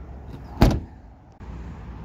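Rear door of a 2011 Ford F-150 SuperCrew pickup being shut, a single thud about half a second in.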